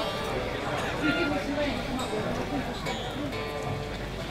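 Electric guitar played through a Laney amplifier, single strings plucked and sounded while the tuning pegs are turned: the guitar is being retuned because it keeps going out of tune.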